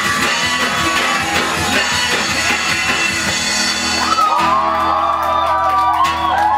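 A small live acoustic band with guitar and vocals plays the final bars of a song. About four seconds in, the music settles into a held closing chord while people whoop and shout.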